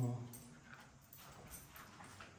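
A man says a short word, then a few soft footsteps on a tiled floor.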